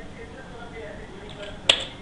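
One sharp click near the end, from the computer's controls as the on-screen tool changes, over a faint low murmur.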